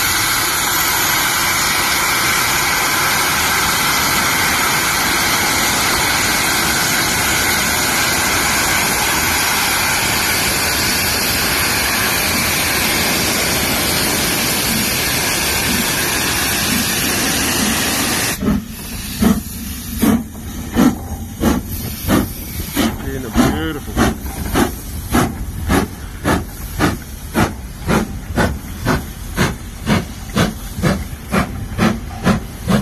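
LMS Black 5 steam locomotive pulling away with a train: a loud, steady hiss of steam that cuts off suddenly about eighteen seconds in. It gives way to sharp chimney exhaust beats that quicken from about one a second to about two a second as the engine gathers speed.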